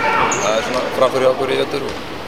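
A man speaking Icelandic.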